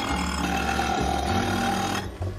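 Power saw cutting through the glass base of a Victorian lamp, running steadily and stopping near the end.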